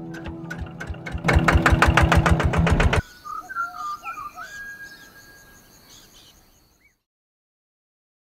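Old stationary pump engine being started: a few clicks, then about a second in it runs with a fast, even beat of about eight firings a second. It cuts off suddenly about three seconds in, giving way to soft music that fades to silence.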